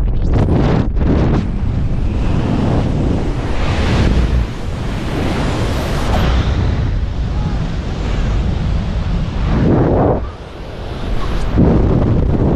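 Loud, steady rush of wind buffeting the camera's microphone during a skydive freefall, easing briefly about ten seconds in before rising again.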